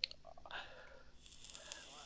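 A pause in speech: a short mouth click at the start, then only faint mouth and breath sounds over low room noise.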